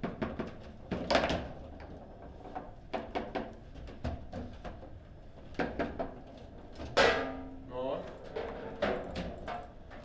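Table football play: the hard ball knocking against the plastic players and the table walls, with rods clacking, in a run of sharp knocks. About seven seconds in comes the loudest bang, as a goal goes in.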